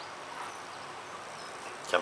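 Steady, even background hiss in a short pause between words.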